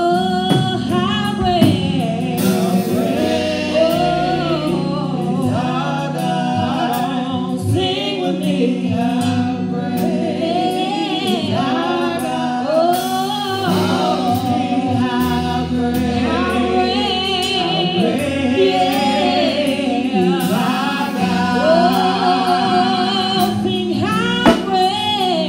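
Gospel praise team singing into microphones: women's and a man's voices in harmony, amplified, over a sustained instrumental backing.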